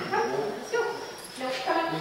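A dog barking and whining in short repeated calls, about three in two seconds, over voices in a large hall.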